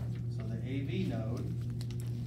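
Scattered light clicks, like typing on a keyboard, over a steady low hum, with a brief murmured voice about half a second in.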